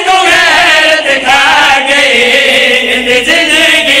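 Several men chanting a noha, a Muharram mourning lament, together into microphones. The melody runs on without a break, rising and falling.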